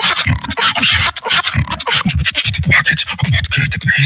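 Solo human beatboxing into a handheld microphone: fast mouth-made percussion of sharp clicks and snares over short, punchy pitched bass sounds.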